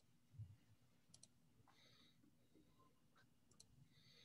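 Near silence: quiet room tone over a video call, with a soft low thump near the start and a few faint, short clicks.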